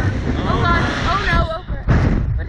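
Wind rushing over the microphone of a camera mounted on a spinning Slingshot reverse-bungee ride capsule, with a rider's voice crying out over it and a stronger gust hitting near the end.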